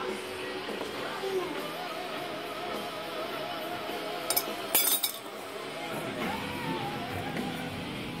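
Background music with a singing voice, and two sharp metal clinks about four and a half seconds in, half a second apart, from hand tools being handled on the concrete floor.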